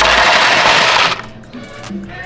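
A load of quarters pouring into a plastic bin on a digital coin-counting scale, a loud, continuous metallic rattle that cuts off about a second in.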